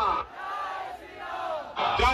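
A large crowd of men chanting and shouting together. The shout falls away just after the start into a quieter stretch of scattered voices, and the next shout rises near the end.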